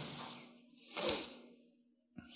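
A man's breath, a soft hiss under a second long, taken through a close-worn microphone about a second in. A faint steady hum runs underneath.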